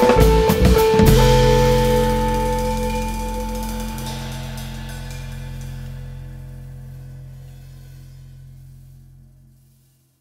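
An electric guitar, electric bass and drum kit trio plays the last bars of an improvised piece. About a second in the band hits a final chord, and it rings out with the cymbal wash, fading slowly over about nine seconds to silence.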